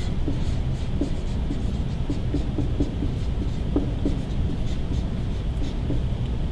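Dry-erase marker writing on a whiteboard: a run of short squeaky strokes as letters are written, over a steady low hum.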